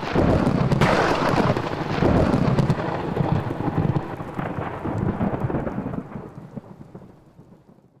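Thunder sound effect: a loud crack about a second in, then a low rumble that fades out toward the end.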